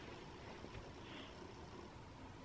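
Near silence: faint room tone, with no distinct sound.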